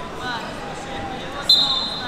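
Referee's whistle, one high steady blast starting about one and a half seconds in, signalling the wrestlers to resume. Before it, voices of coaches and spectators in the hall.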